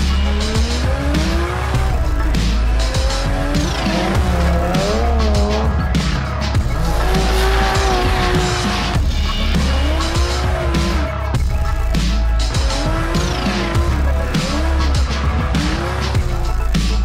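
Toyota Chaser JZX100 drift car drifting, its engine revving up and down with tyres squealing through the slide; the pitch rises and falls again and again. Music with a heavy bass plays underneath.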